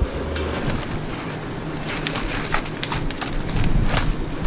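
Working-deck noise aboard a fishing cutter: a steady rush of water and wind noise with scattered knocks and clatters. A low engine hum underneath drops away in the first half-second.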